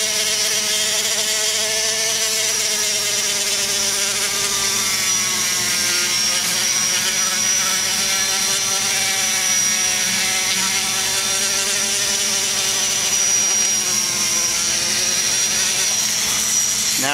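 Air die grinder spinning an abrasive cartridge roll inside the aluminium exhaust port of an LS cylinder head, polishing the port smooth. It runs without a break as a steady high whine, its lower tones sagging and rising slightly as the roll bears on the metal.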